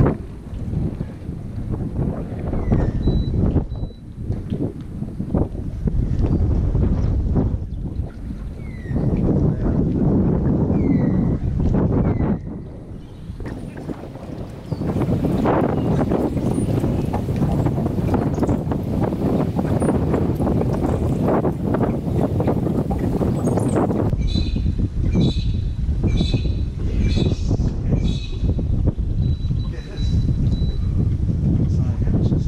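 Wind buffeting an action camera's microphone on a small boat: a dense, rumbling noise that drops briefly a little before the halfway point. Short high chirps sound above it, and near the end comes a quick run of repeated high calls.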